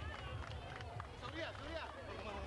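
Several voices talking and calling out at once, over running footsteps and a low rumble of street noise.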